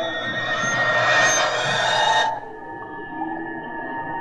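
Early 1970s electronic music on a Buchla synthesizer: layered tones with slow arching pitch glides under a bright, dense upper texture. The bright layer cuts off suddenly a little past the halfway point, leaving quieter held tones.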